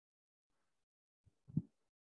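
Near silence, broken once by a brief low sound about one and a half seconds in.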